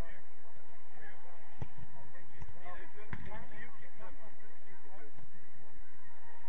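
Players shouting and calling to each other across a football pitch, with two sharp ball kicks, about a second and a half in and about three seconds in.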